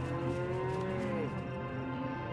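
Several cows mooing in overlapping long calls, each dropping in pitch as it ends, over soft background music.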